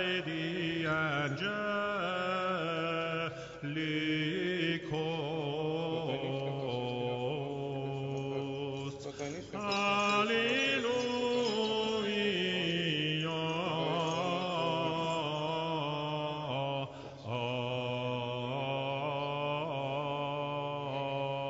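Byzantine chant: a melodic vocal line moving over a held drone note (the ison), with brief breaks about nine and seventeen seconds in.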